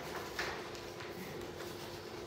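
Quiet room tone with soft handling of a sheet of paper, a light tick about half a second in, over a faint steady hum.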